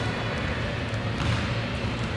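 Steady background noise of a large gym hall: a constant low rumble with a few faint knocks, and no distinct event standing out.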